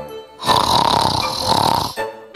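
A loud, drawn-out snore of about a second and a half, while the light background music breaks off.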